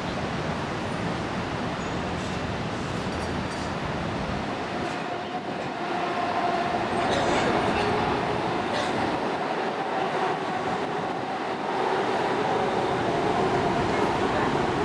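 Steady city traffic noise, with a steady mechanical whine coming in about six seconds in as the sound grows a little louder.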